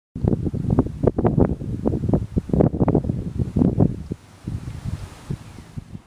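Wind buffeting the microphone in irregular gusts, easing off about four seconds in.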